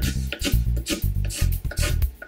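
Background music with a plucked bass line and a steady beat, with a pencil scratching along a pine board.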